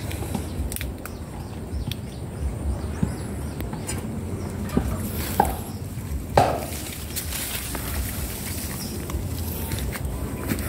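Handling noise of a phone carried on foot through shrubbery: leaves brushing past and a few sharp clicks in the middle, over a low steady rumble.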